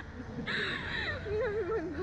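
A young woman's shrill shriek about half a second in, sliding down in pitch, then a wavering, laughing cry of "ay" from a rider on a slingshot thrill ride, over a steady low rumble.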